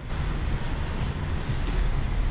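Steady low rumble with a hiss of outdoor street noise picked up by a walking camera, louder from the very start.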